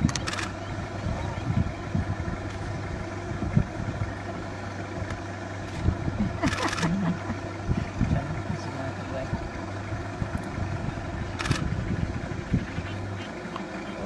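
A steady low hum under faint voices, with three short sharp clicks spread through it; the hum stops about a second before the end.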